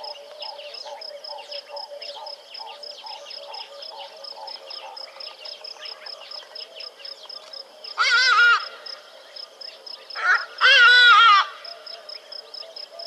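A large bird gives two loud, nasal, honking calls, a short one about eight seconds in and a longer one about two seconds later. Under them runs a steady background chorus that pulses about three times a second.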